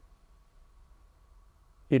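Near silence: room tone with a faint steady whine during a pause in a man's talk, his voice coming back in at the very end.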